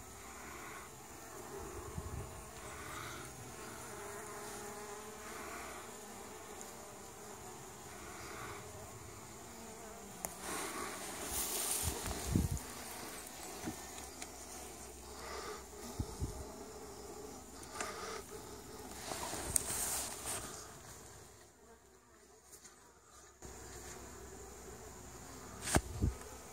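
Honey bees buzzing steadily around a hive entrance, with a few brief rustles of handling part-way through.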